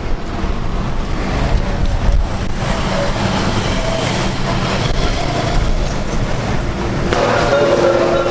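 Street traffic with a vehicle engine running close by, a continuous rumbling noise. Near the end a steady hum of several tones comes in.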